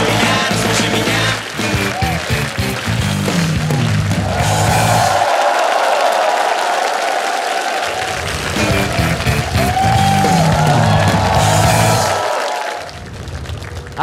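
Studio audience applauding over loud music with a bass line. The bass drops out for a couple of seconds in the middle, and the music eases off near the end.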